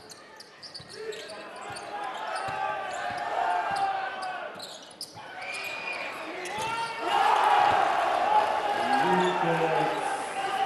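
Live basketball game sound: the ball bouncing on the hardwood court during play, then the arena crowd noise swells suddenly about seven seconds in as a three-pointer drops.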